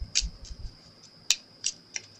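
Handling a deck of prayer cards and their clear plastic box: a handful of small, sharp clicks and taps, the sharpest a little past the middle.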